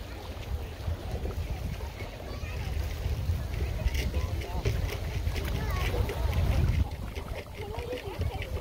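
Wind buffeting the microphone with a gusty low rumble, over scattered background voices.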